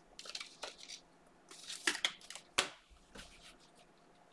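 Football trading cards being handled: cards slid off a stack and set down on the table, with several short scrapes and clicks, the sharpest a bit past halfway.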